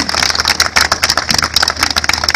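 Crowd applauding: many hands clapping in a dense, steady patter.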